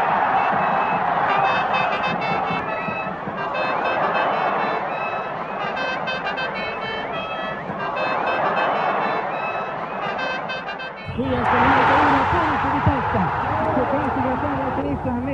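Large stadium crowd roaring in swells every two to three seconds, with short bursts of high piping tones sounding over it. The recording is old broadcast audio. About eleven seconds in it cuts to a louder crowd with a man's voice calling over it.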